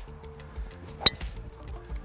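Background music with a steady beat; about a second in, a single sharp click of a golf club striking a ball on a drive.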